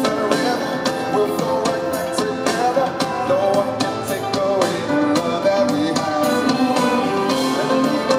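Live pop band playing a song: drum kit keeping a steady beat under guitar and keyboard parts, with singing voices over them.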